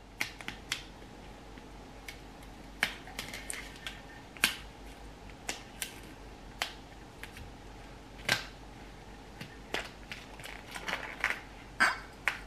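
Irregular light clicks and taps as small hard objects are handled, a couple of dozen spread unevenly with a few sharper knocks among them.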